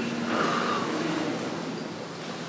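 A pause between spoken sentences, filled with the steady hiss and low hum of an indoor room's background noise picked up by the microphones.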